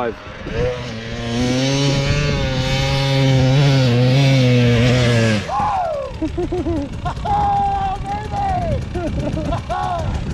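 Husqvarna FX350 dirt bike's 350cc four-stroke single pulling at a steady, high engine speed up a hill climb, the pitch sagging slightly before it drops off about five seconds in. It is followed by short throttle blips and revs at the crest.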